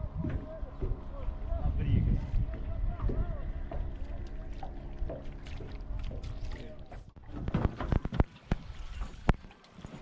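Indistinct voices over a steady hum, then a quick run of sharp knocks and clicks about seven seconds in.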